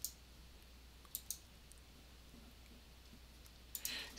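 Computer mouse clicks, a few sharp ones in pairs: two at the start, two about a second in, and two near the end, over quiet room tone.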